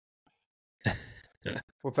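Near silence, then about a second in a man's breathy sigh into the microphone, a sudden exhale that fades within half a second, just before he starts to speak.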